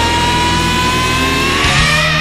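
Melodic heavy metal music: a long held lead note rising slowly in pitch over a steady band backing.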